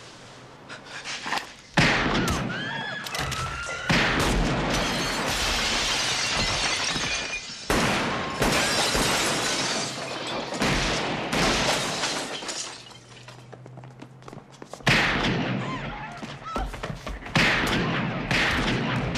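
Film shootout: about five sudden gunshots from a Smith & Wesson .44 Magnum revolver and others, each followed by a long crash of shattering glass and falling debris, with a quieter lull shortly before the last two shots.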